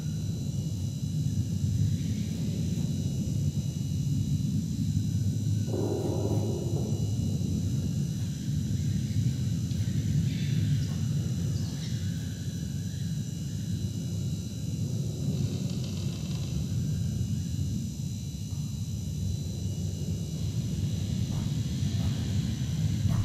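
A low, steady rumbling drone with a faint high hum above it. A brief pitched sound rises out of it about six seconds in, and fainter short sounds come later.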